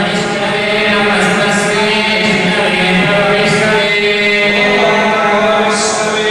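Male priests chanting Hindu mantras into microphones, a steady, continuous chant with sustained held tones.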